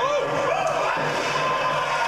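Speech: a man's short shout of "Oh!", then speech over a steady background din.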